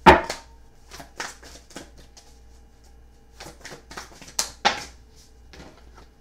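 Tarot cards being handled on a cloth-covered table: a string of irregular sharp taps and clicks, the loudest right at the start and a pair of strong ones about four and a half seconds in.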